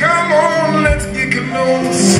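Live blues band playing a slow song: acoustic guitar, electric upright bass and organ, with a wavering lead melody on top and a low beat falling about every 1.3 seconds.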